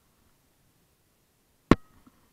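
Near silence, then a single sharp click about one and a half seconds in, with a brief faint ringing after it.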